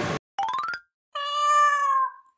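A quick upward-gliding sound effect, then a cat's meow about a second long, used as edited-in sound effects.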